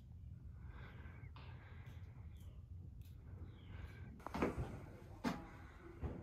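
Quiet footsteps scuffing on the cave's rock and dirt floor, with a few light taps and two louder short thumps near the end.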